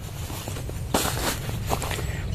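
Footsteps on dry straw mulch, with a louder rustle about a second in.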